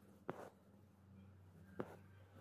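Hand-sewing needle-lace work, needle and silk thread drawn through fabric: two short soft ticks about a second and a half apart against near silence and a faint low hum.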